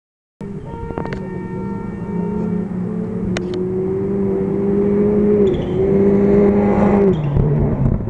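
Rally car engine approaching at speed, growing steadily louder. Its pitch shifts with a gear change about five and a half seconds in and drops near the end.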